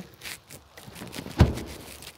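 Rustling and light clicks from someone moving about inside an SUV's cabin with a handheld camera, with one dull thump about one and a half seconds in.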